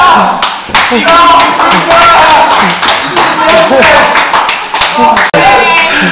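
A few people clapping in irregular claps, with men's voices calling out over them.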